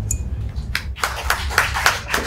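Live audience applause, clapping starting up a little under a second in over a low steady rumble.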